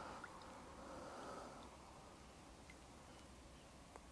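Near silence: faint steady background noise, with a single faint click near the end.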